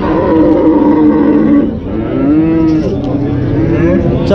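Cattle mooing: two long, loud moos with a short break about halfway between them.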